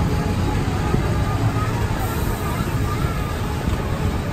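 Steady low rumble of a monorail train running along its single rail, with indistinct voices of passengers.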